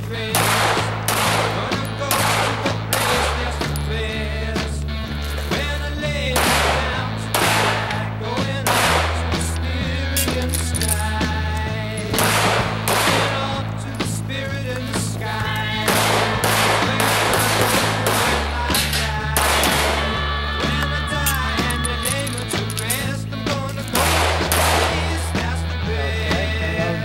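Background rock music with a steady, repeating bass line, overlaid with pistol shots fired in quick, irregular strings during a shooting-match stage.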